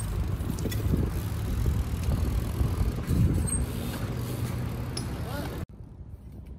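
BMX tyres rolling over brick pavers: a steady low rumble with scattered small clicks and rattles from the bike. It drops abruptly to a quieter background near the end.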